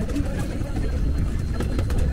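Steady low rumble of a tour boat's engine, with laughter and people's voices over it near the start.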